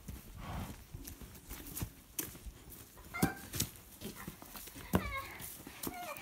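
A person imitating a horse: several sharp clicks for hoofbeats, with short falling vocal squeals like neighs after the louder clicks about three and five seconds in.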